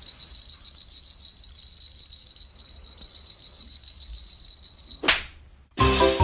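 A cat's wand toy jingling steadily with a light, high tinkle as it is waved. A short whoosh comes about five seconds in, and music starts just before the end.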